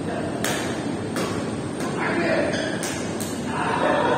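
Badminton rackets hitting a shuttlecock in a rally: about five sharp smacks at uneven intervals, with voices in the hall.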